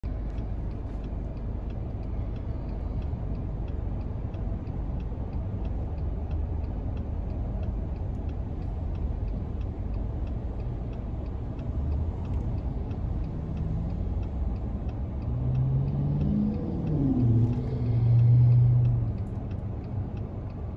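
Car cabin rumble while the car idles at a traffic light, with a turn-signal indicator ticking steadily. Near the end a nearby vehicle pulls away, its engine note rising, and a low engine drone peaks loudest just before the end.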